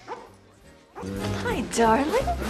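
A golden retriever barking near the end, over background music and a woman's greeting, after about a second of near quiet.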